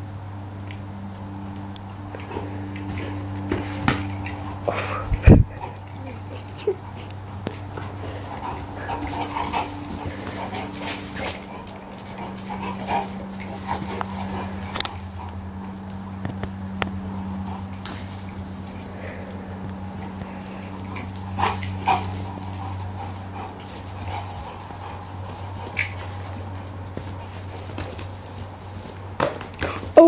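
A dog giving short whines and barks while playing, over a steady low hum, with scattered knocks and one loud thump about five seconds in.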